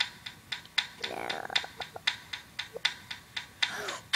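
A quick run of light clicks, about four or five a second and somewhat uneven, with a faint voice briefly about a second in.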